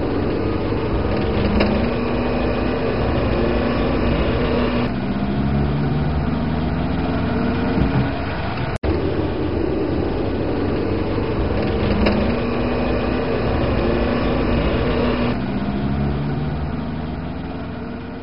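Car engine and road noise heard from inside the cabin while driving, with the engine note rising a few times as the car pulls away. The sound cuts out for an instant about halfway through.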